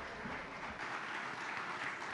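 An audience applauding, steady and fairly faint.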